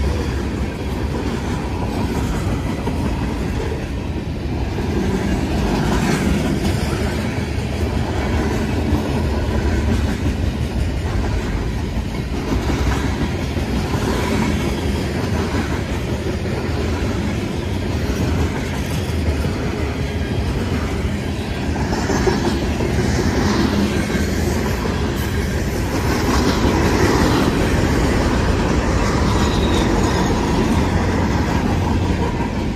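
Union Pacific freight train cars (hoppers and tank cars) rolling past at a grade crossing: a steady rumble of steel wheels on rail, with repeated clicks as the wheels cross the rail joints.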